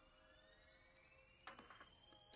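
Near silence: a few soft clicks of glossy trading cards being shuffled in the hands about one and a half seconds in, over faint steady and slowly rising tones.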